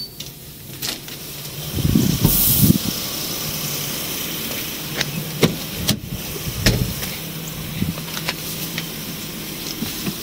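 A loud rush of noise as a door is passed through, then the steady hum of a patrol car idling, with several sharp clicks and clunks as its door is opened and someone gets in.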